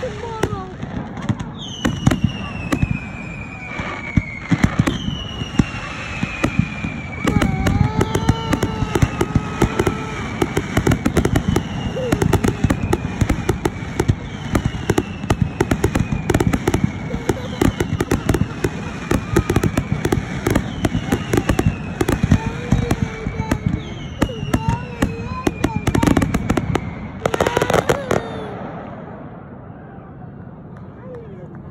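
Fireworks finale: a dense barrage of bangs and crackling, with a run of whistles falling in pitch about every second and a half. It thins out and stops near the end.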